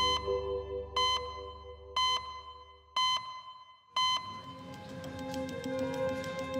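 Five short electronic pips, one each second, the ticking sound effect of an on-screen clock time-stamp, over a soft sustained music bed that fades away. New background music builds in after the last pip.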